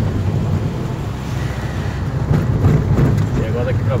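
Car driving slowly over a rough dirt track, heard from inside the cabin: a steady low engine and road rumble, with a few knocks from the bumpy surface in the second half.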